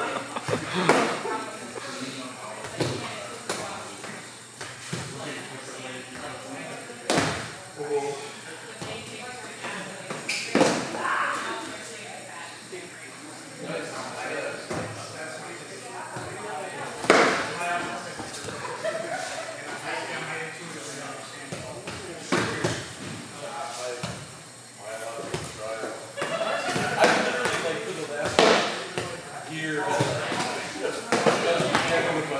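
Sharp smacks of foam pool noodles striking during fencing sparring, about half a dozen hits spaced irregularly several seconds apart, ringing a little in a large hall.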